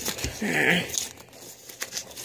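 Paper coin-roll wrapper for half dollars crinkling and tearing as it is unwrapped by hand, in a burst about half a second in, followed by a few light clicks.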